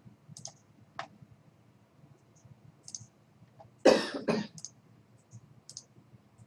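A person coughing twice in quick succession a little after halfway, loud against the room. Light computer mouse clicks are scattered through, as menu items and a dialog button are clicked.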